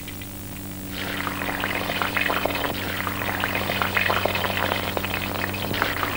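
Luchi deep-frying in hot oil: a crackling sizzle that starts about a second in, over a steady low hum.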